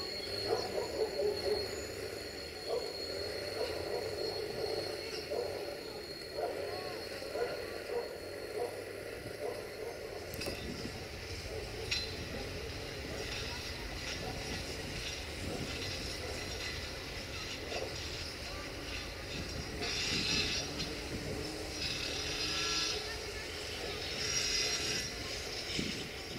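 A long freight train of open wagons rolling past, wheels clattering on the rails. In the second half come repeated bursts of high metallic squealing from the wagons.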